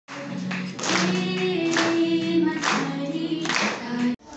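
A girl singing long held notes with acoustic guitar accompaniment, with a sharp accent about once a second.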